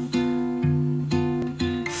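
Background music: strummed acoustic guitar chords between sung lines of a song, with the chord changing about twice a second.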